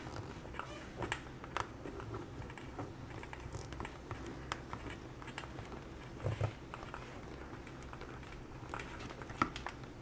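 Tiny Phillips screwdriver driving a small screw into a 3D-printed plastic robot chassis: faint, scattered clicks and scrapes over a low hum, with a slightly louder knock about six seconds in.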